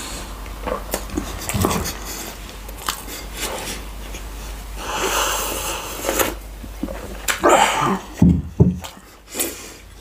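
Close-miked mouth sounds of a person eating and drinking: small chewing clicks, a breathy exhale about five seconds in, then drinking from a glass of water with a few low gulps a little after eight seconds.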